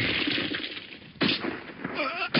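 Cartoon impact sound effect: a heavy crash of dirt and rubble dying away over about a second, then a second short, sharp hit about halfway through.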